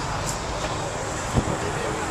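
Outdoor crowd ambience: faint background voices over a steady low rumble, with one sharp thump a little past halfway.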